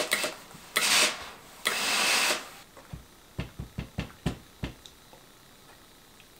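Steam generator iron pressing linen: two bursts of steam hiss about a second apart, followed by a run of about six light knocks as the iron is lifted and handled.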